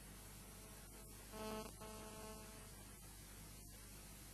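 Near silence with a steady faint electrical mains hum, and a brief faint pitched sound about a second and a half in.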